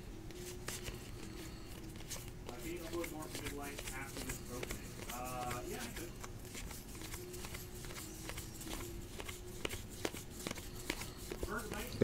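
A stack of 2018 Score football trading cards being thumbed through by hand, card by card: a run of soft flicks, clicks and slides of card stock. A faint voice murmurs in the background around the middle.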